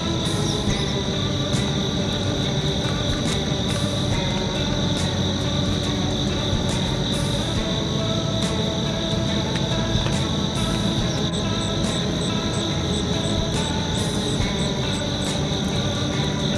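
A steady, high insect chorus runs throughout, with background music of long held notes underneath.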